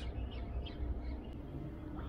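Faint dawn outdoor ambience: a low steady background rumble with a few short, faint bird chirps early on.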